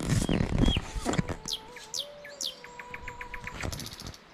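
Wild birds calling in a bamboo forest: several short, high, downward-sliding whistles, then a quick series of short notes near the end. A loud rustling handling noise fills the first second.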